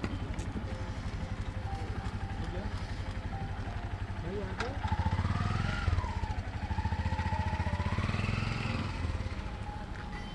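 An engine running close by, a fast, steady low throb that grows louder about five seconds in, with voices calling out over it.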